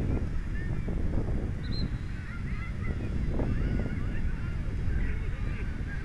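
A flock of birds calling, many short overlapping calls throughout, over a steady low rumble.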